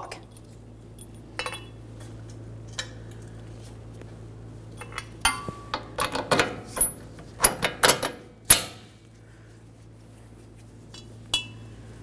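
Scattered metal clinks and clicks as a steel bolt with a washer is fed through a shock absorber's lower mounting eye and the suspension knuckle. The clinks come thickest between about five and nine seconds in, over a low steady hum.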